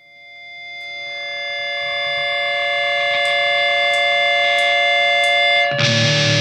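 Grindcore recording: the band cuts out and a single sustained, distorted electric guitar tone swells up from nothing and holds steady, with four faint, evenly spaced ticks in its second half. The full band crashes back in just before the end.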